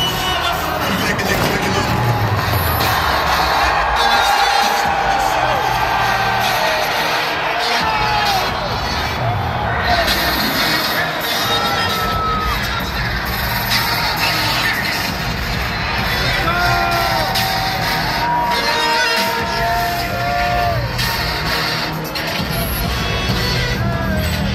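Stadium PA music playing loudly over a large football crowd cheering and whooping, with a few sharp bangs from pregame pyrotechnics.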